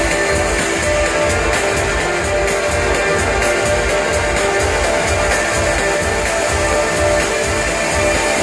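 Electronic dance music from a DJ set, played loud over a club sound system: a steady kick-drum beat pulses under sustained synth notes.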